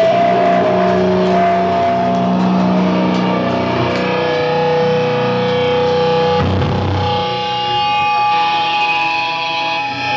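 Loud distorted electric guitars from a live rock band, ringing out in long held notes that change pitch every few seconds.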